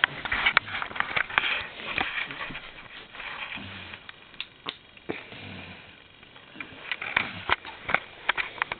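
Close rustling and sharp clicking handling noise, with quiet breathing and a few faint, low, hushed murmurs; it quietens for a few seconds midway.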